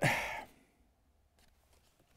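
A man's short breathy sigh, an exhale lasting about half a second that fades out, followed by near silence with one faint click.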